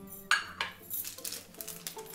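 A dish knocking down on a granite countertop, a sharp clatter about a third of a second in, followed by a few lighter clinks, over background music.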